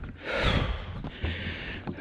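A man breathing heavily while hiking, about three loud breaths in the pause between phrases.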